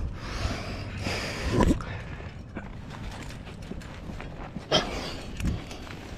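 A rock climber breathing hard in long, noisy breaths, with a few knocks and scrapes of hands, shoes and gear against the rock. The loudest knocks come about one and a half seconds and nearly five seconds in.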